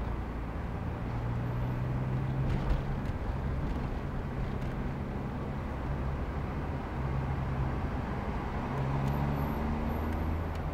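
Car engine and road noise of a moving car in city traffic, a steady rumble whose low hum rises and falls slowly with speed. A single knock about two and a half seconds in.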